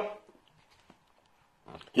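A man's speaking voice trailing off, then a pause of over a second with only faint room tone, before he starts speaking again near the end.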